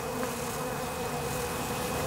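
Honeybees buzzing in a steady, even hum as they crowd around spilled honey to feed.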